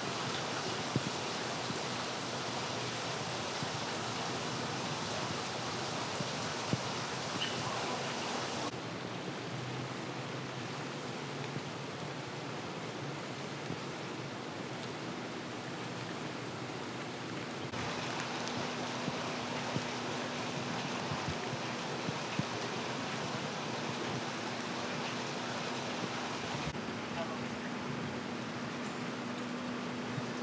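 Steady hiss of rain and wet street ambience with a low steady hum running under it, shifting abruptly in level a few times.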